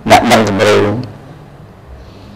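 A man's voice for about the first second, with a short spoken or exclaimed sound, then quiet room tone.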